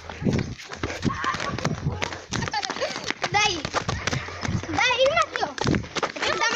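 Children's high, wavering shrieks and cries among running footsteps, with frequent short knocks from handling the phone.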